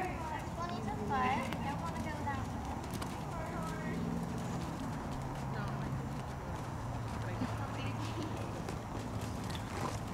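Horses walking on the arena's sand footing, their hoofbeats mixed with faint voices in the background.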